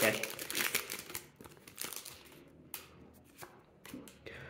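Foil booster pack wrapper crinkling and rustling in the hands just after being torn open, busiest in the first two seconds, then only a few faint crackles.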